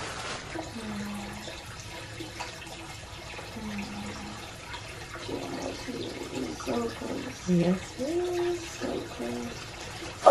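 Water running from a hose into an inflatable birth pool, a steady hiss. Short low hums come about a second in and near four seconds, and more low moans from the woman in labour follow in the second half.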